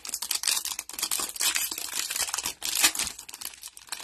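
Plastic-foil wrapper of a Donruss Optic football card pack crinkling and tearing as gloved hands rip it open: a dense run of sharp crackles.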